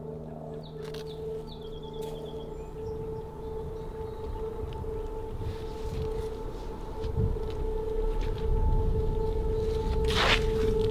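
Soundtrack drone: one steady held tone with a fainter overtone above it, over a low rumble that swells steadily louder.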